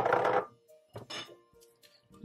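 A short clatter of sliced carrots dropping into a plastic blender cup, then a single light knock about a second later, over soft background music.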